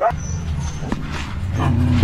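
A dog barking.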